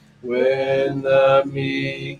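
Unaccompanied (a cappella) hymn singing in a man's voice. After a brief pause for breath at the start, he sings held notes that change pitch every few tenths of a second.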